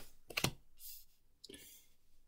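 Tarot cards being handled: a few short sharp clicks as a card is drawn off the deck, then fainter rustling as it is laid down on the cloth.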